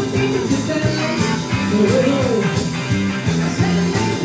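Live rock and roll band playing: electric guitars, bass and a steady drum beat under a male lead singer.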